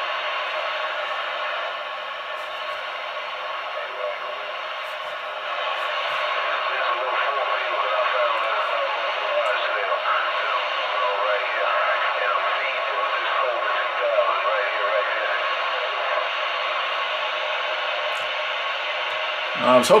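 Realistic TRC-474 CB radio receiving voice traffic: garbled, distant voices over steady static, thin and narrow-band through the radio's small speaker. The voices come in stronger about five seconds in.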